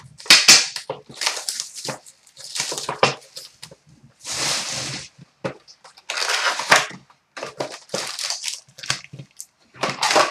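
Sealed trading-card box being torn open by hand, its plastic wrap and cardboard crinkling and tearing, and the foil packs pulled out. A run of short rustling, crinkling bursts, with one longer tearing rustle a little before the middle.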